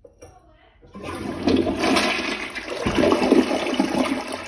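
Glacier Bay toilet flushing: after a quiet second, a loud rush of water starts about a second in and carries on as the bowl swirls and drains, a decent flush.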